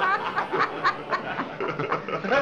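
Laughter: a run of short, repeated laughing bursts.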